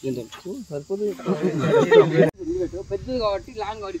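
Several people's voices calling and shouting over one another, loudest just before a sudden cut about two seconds in, then voices again.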